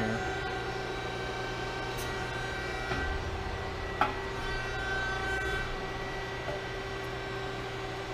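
Hydraulic pump of a Hoston 176-ton CNC press brake running with a steady, quiet hum and a few constant tones. There is a single click about four seconds in and a brief deeper swell between about three and six seconds in.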